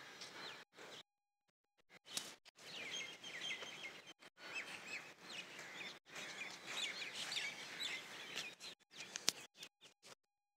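Several small birds chirping and twittering over a light outdoor hiss, thickest from about two and a half seconds in; the sound cuts out completely for brief moments, longest at about one to two seconds in.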